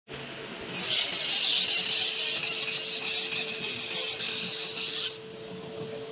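Fiber laser marking machine engraving lettering into a metal thermos bottle. A steady high hiss of the beam marking the metal starts about a second in and cuts off suddenly near the end, over a constant hum from the machine.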